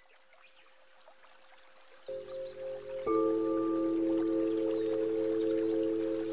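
Nature-themed 528 Hz relaxation music: a faint water-like hiss fades in, then a sustained chord of held tones enters about two seconds in, with more tones joining a second later.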